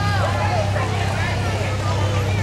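Several people talking and calling out at once, no single voice clear, over the steady low hum of a pickup truck's engine as it moves past at walking pace.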